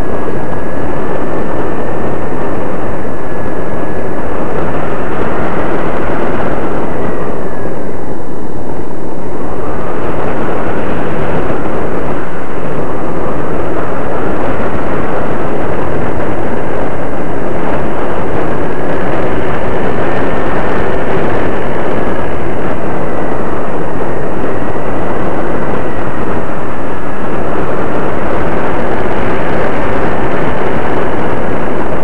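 A Slow Flyer 1400 RC plane's motor and propeller, heard loudly from its onboard camera over heavy wind rush. The motor's whine wanders slowly up and down in pitch. About eight seconds in it dips sharply and thins out, then climbs back.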